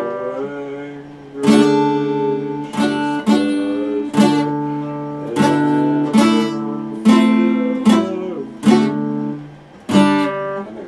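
Epiphone acoustic guitar strummed in slow chords, about nine strums spaced roughly a second apart, each chord ringing out and fading before the next, with the chords changing as it goes.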